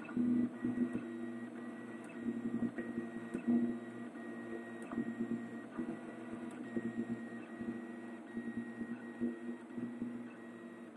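Prusa RepRap 3D printer laying down the crosshatched infill of a small square part, its stepper motors whining in short tones that keep changing pitch as the print head darts back and forth. A faint steady high whine runs underneath.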